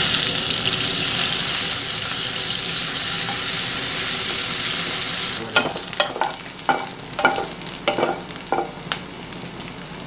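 Chicken pieces sizzling loudly in hot oil in a nonstick pan. About five seconds in the sizzle drops to a quieter fry, and a spatula knocks and scrapes against the pan several times as the browned pieces are stirred.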